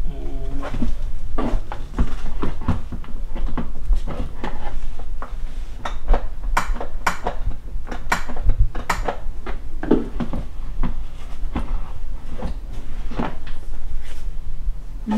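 Plastic clicks, knocks and clunks as an infant car seat is handled and pushed onto a pushchair frame's mounts. The knocks come irregularly and bunch together midway.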